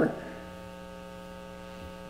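Steady electrical mains hum from the church sound system, a buzz made of many evenly spaced overtones that holds level throughout.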